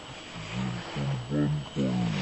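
A low-pitched human voice, with a rising sweep in pitch near the end.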